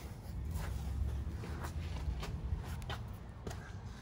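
Handling and movement noise as a phone camera is carried into the van: a low rumble with a few faint knocks and rustles.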